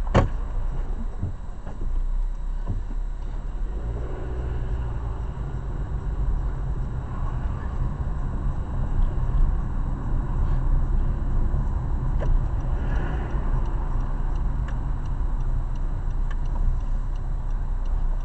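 Car cabin noise while driving slowly: a steady low rumble of engine and road heard from inside the car, with a sharp click right at the start and a few faint ticks later.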